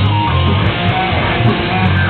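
A live rock band playing loudly: electric guitars, bass guitar and drums together.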